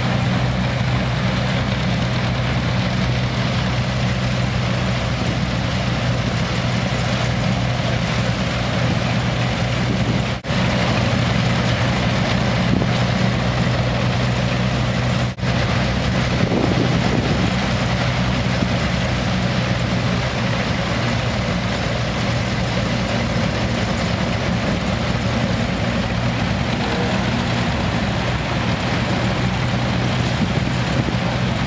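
Belt-driven antique threshing machine running steadily as it threshes wheat: a constant low hum under a broad rushing noise.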